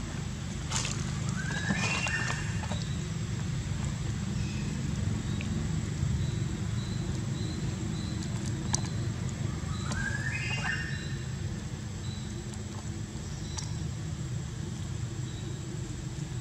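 Two short, high animal calls, each stepping upward in pitch, one about two seconds in and another about ten seconds in, over a steady low outdoor rumble.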